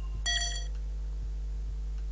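One short, bright electronic quiz-show chime from a contestant's colour button, about a quarter second in and lasting half a second, sounding as a letter is entered on the on-screen board. A steady low mains hum runs underneath.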